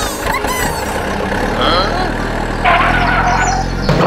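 Truck engine sound running steadily with a low hum, with a rougher, noisier stretch about three seconds in. It opens with a brief burst of squeaky chirps.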